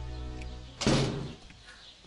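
Held background music notes fade, then a door bangs once, loudly, about a second in.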